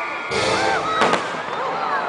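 Fireworks going off: a brief rush of noise, then a single sharp bang about a second in.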